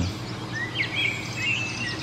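Birds chirping: a series of short, quick high chirps over a steady outdoor background hiss.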